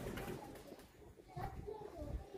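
Pigeons cooing, with people's voices in the background.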